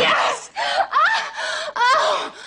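A woman's loud, exaggerated moans and gasping cries, one after another about every half second, several rising sharply in pitch: an acted, faked orgasm.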